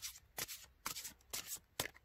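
Cards being handled: a handful of short, light papery clicks and flicks spread over two seconds.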